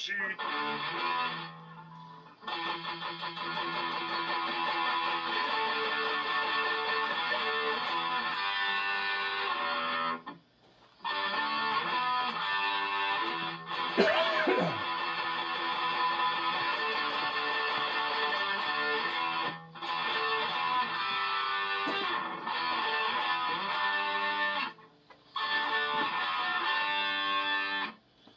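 Les Paul–style electric guitar through an amplifier, down-picking a repeating rock riff in phrases with three short breaks. About halfway through, a quick slide down the neck falls in pitch and is the loudest moment.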